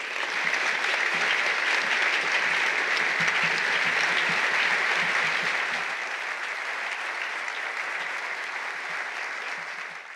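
An audience applauding: a dense, steady clapping that is loudest for the first five seconds and eases a little after about six seconds.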